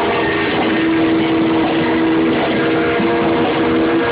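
Rock band playing live, loud, with a long held note sounding through most of it over a dense, distorted wash of electric guitar.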